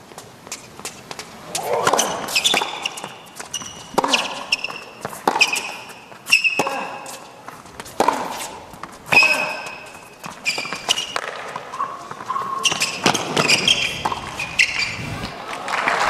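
A tennis rally on an indoor hard court: rackets striking the ball and the ball bouncing in a steady series of knocks about a second apart, with rubber-soled tennis shoes squeaking on the court between shots. Crowd noise rises near the end as the point is won.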